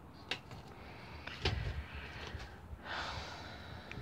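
Faint handling sounds of hands working yarn with a crochet hook: a few light clicks and a soft rustle. A short breath comes about three seconds in.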